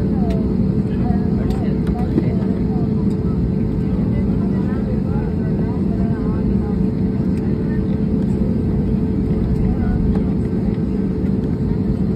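Steady jet airliner cabin noise while the plane taxis, a low rumble with a steady hum from the engines, and faint passenger voices murmuring underneath.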